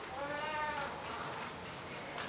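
A single brief high-pitched vocal call, under a second long, its pitch rising slightly and then falling, like a young child's cry in the congregation.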